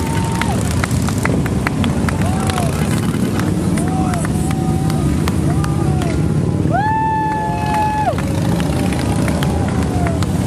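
A procession of Harley-Davidson V-twin motorcycles riding past, their engines running in a steady low rumble. Several drawn-out high tones sound over them, the longest about seven seconds in.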